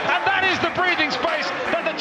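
A male football commentator speaking over a goal; speech only.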